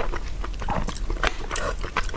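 Close-miked eating sounds of a mouthful of soft rice in gravy being taken off a spoon and chewed: wet mouth smacks and small clicks.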